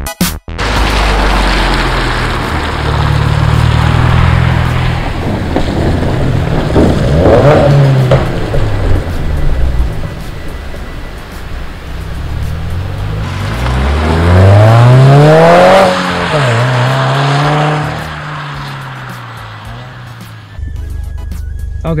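2015 Subaru WRX's turbocharged 2.0-litre flat-four accelerating, its pitch rising briefly about seven seconds in and again for longer from about thirteen to sixteen seconds, then falling as it eases off.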